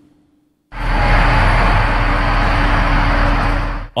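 A loud, steady rushing noise with a deep rumble underneath starts suddenly under a second in and cuts off just before the end.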